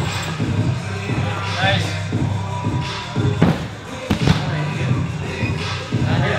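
Background music with a steady beat and singing. Over it come two heavy thuds about a second apart in the middle of the stretch: a gymnast coming down off the high bar onto the crash mat.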